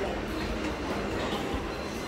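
Steady low rumbling background noise of a restaurant dining room, with no distinct events standing out.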